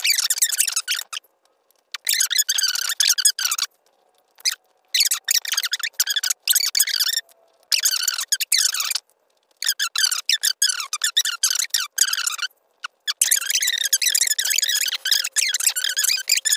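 A woman's speech sped up and raised to a high, thin pitch, like a chipmunk voice, coming in short runs with brief gaps. A faint steady tone sits underneath.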